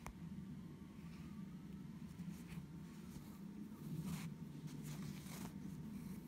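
Faint scratchy rustles of a needle and embroidery thread being drawn through evenweave cross-stitch fabric: a few brief strokes over a steady low hum, with a sharp click at the start.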